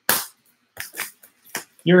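A sharp snap of cardboard packaging as a trading-card box is opened, followed by a few lighter clicks as it is handled.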